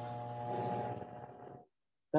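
A steady mechanical hum with a buzzing edge that cuts off suddenly near the end, the way a video call's noise gate shuts an open microphone.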